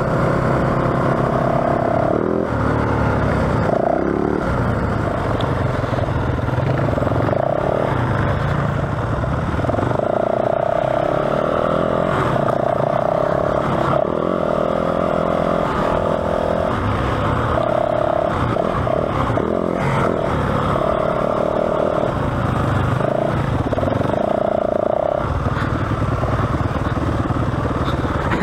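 Yamaha WR450F's single-cylinder four-stroke engine running while the bike is ridden, its revs held steady for a second or two at a time and then changing, with another dirt bike running just ahead.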